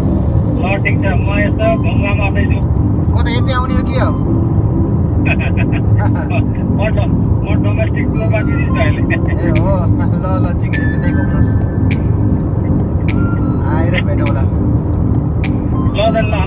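Steady road and engine rumble heard inside a car cruising on a highway, with voices over it.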